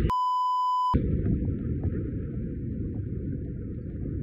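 A steady high electronic beep for about the first second. Then the deep rumble of a ship's missile-struck munitions explosion, recorded on a phone at a distance, goes on with a thin hiss over it and slowly fades.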